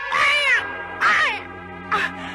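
A domestic cat meowing twice, each call rising and falling in pitch, over background music with held notes.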